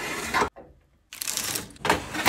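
Wire mesh air-fry basket sliding out along the oven rack, a rattling metal scrape. It stops suddenly about half a second in and starts again, with a sharp clank near the end.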